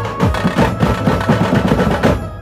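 A dhumal band's drummers beating large drums and side drums in a fast, dense rhythm, with a held high melody note sounding over the drums.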